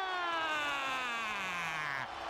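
A play-by-play announcer's drawn-out goal call for an ice hockey goal: one long held shout that slides steadily down in pitch for about two seconds.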